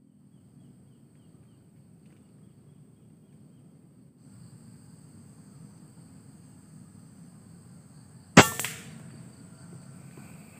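An air rifle fires once about eight seconds in: a single sharp crack with a short tail that quickly dies away.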